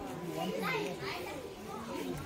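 Indistinct background chatter of several adults and children talking over one another, with no words clear enough to make out.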